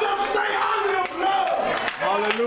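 Loud, excited shouting voices crying out, with a few sharp claps in the second half.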